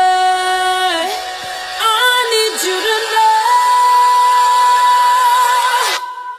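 Pop song playing as background music, a singer holding long notes: one in the first second, then another from about halfway that steps up slightly and is held for nearly three seconds.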